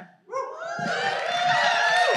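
Audience applauding and cheering, with many overlapping whoops, building up about a third of a second in.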